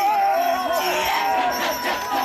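Kecak chant: a large chorus of male voices, with one voice singing a long, wavering melodic line above the group.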